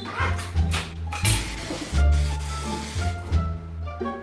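Music with a steady bass line, over which a hand-held fire extinguisher sprays in a loud hiss for about a second, putting out a fire at an engine on a stand.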